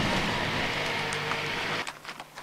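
ATV engine running steadily, cutting off suddenly near the end.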